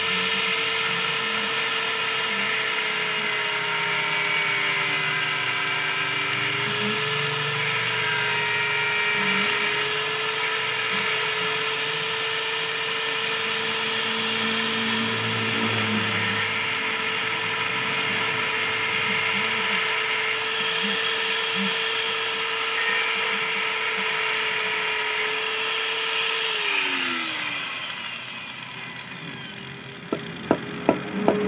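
Electric angle grinder with a thin cutting disc running at steady speed, grinding at a stainless-steel wire fish hook. Near the end it is switched off and its whine falls in pitch as it winds down.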